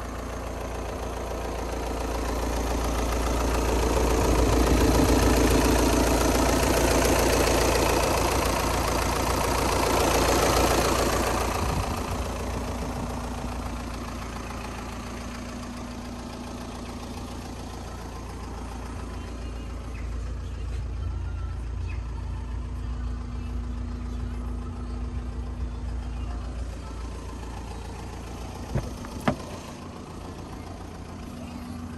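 VW Tiguan engine idling steadily, louder for several seconds in the first half and then quieter and even. Two sharp clicks near the end.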